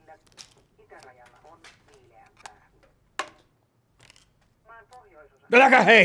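Quiet talk with a few light clicks, one sharper click about three seconds in, then a man's loud, agitated exclamation in Finnish near the end.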